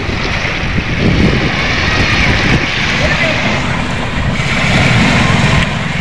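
Wind buffeting the microphone over small waves washing onto a pebble shore.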